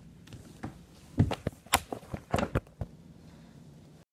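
Handling noise close to the microphone: a quick run of about six knocks and rubs over a second and a half as the recording phone and a plush toy are moved against each other.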